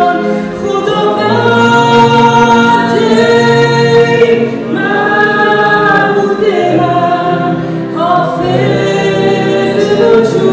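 A woman singing a slow worship song in long held notes, accompanied by her own playing on a Kawai MP8II digital stage piano.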